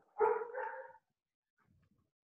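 A dog barking once, briefly, a moment after the start.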